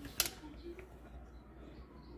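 A single sharp click just after the start, over faint room noise.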